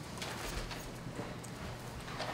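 Footsteps of a man walking across the meeting-room floor: a series of short, soft steps over a low room hum.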